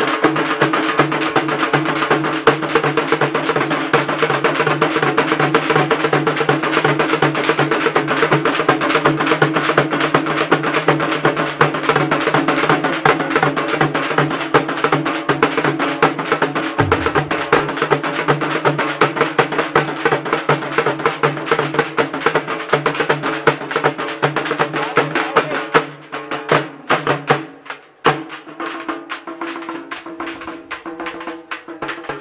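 A group of large double-headed drums beaten with sticks in a fast, driving rhythm over a steady low held tone. About 26 seconds in the drumming breaks off into a few scattered strokes.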